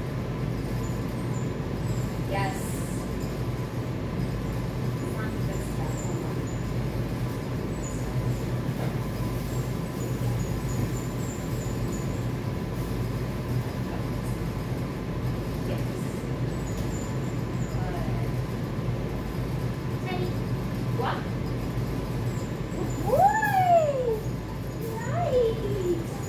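Steady low hum of a large indoor room, with a few faint clicks. Near the end come two short falling whines, a small puppy's whine.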